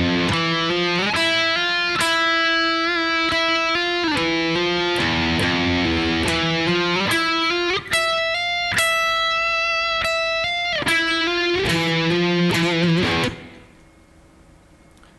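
An SG electric guitar plays a slow Phrygian doom riff in octave shapes. Held octave pairs shift up and down a minor second and move up the neck, then the playing stops shortly before the end.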